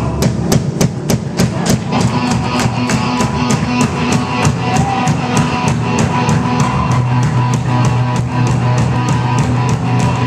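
Live rock band playing an instrumental passage: drum kit keeping a fast, steady beat under electric guitars and bass guitar.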